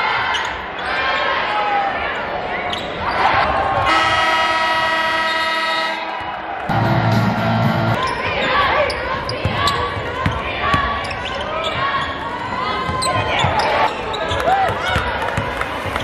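Basketball game sound in an arena: a ball bouncing on the court among players' and spectators' voices. About four seconds in, a steady electronic horn sounds for about two seconds, followed by a shorter, lower tone.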